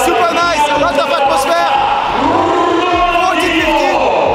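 A man talking close to the microphone over the steady noise of a large crowd in an indoor arena.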